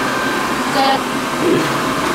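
Wall-mounted electric hand dryer blowing steadily, with brief children's voices over it.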